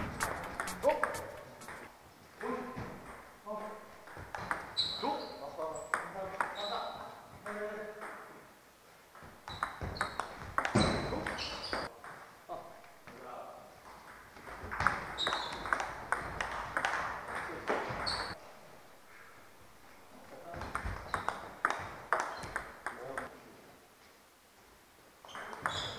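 Table tennis rallies: the ball clicking rapidly off paddles and the table in quick exchanges, in several bursts separated by short pauses between points.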